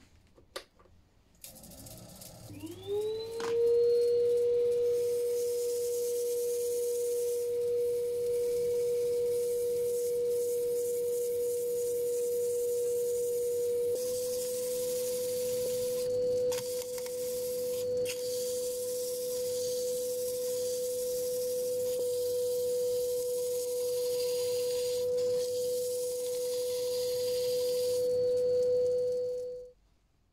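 Wood lathe motor spinning up with a rising whine that settles into a steady tone, then running at constant speed. Over it, abrasive paper hisses against the inside of the spinning wood-and-resin hollow form as it is sanded. Both cut off suddenly near the end.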